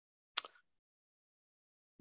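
Near silence, broken about a third of a second in by one brief, faint mouth sound.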